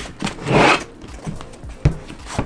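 Cardboard packaging sliding and rubbing as a sleeve is pulled off a boxed LED panel: a scraping swell about half a second in, then a sharp knock against the table near the end.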